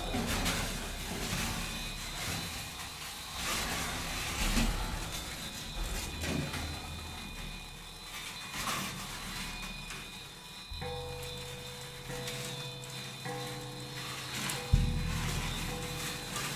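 Prepared drum kit: crumpled foil sheets rubbed and scraped against the drumheads by hand, making irregular rustling, crackling textures. About eleven seconds in a sustained low hum with steady higher tones sets in, and near the end a sudden deep thud sounds.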